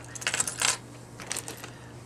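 Metal costume jewelry handled on a wooden table: a run of light clicks and clinks, the sharpest about two-thirds of a second in, then a few fainter ticks.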